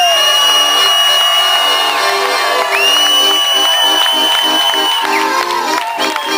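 Accordion playing a rhythmic accompaniment live on stage, while the crowd cheers and someone gives two long, high-pitched whistles, each about two seconds long.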